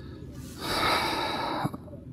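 A man's loud breath, close to a clip-on microphone, lasting about a second and starting about half a second in.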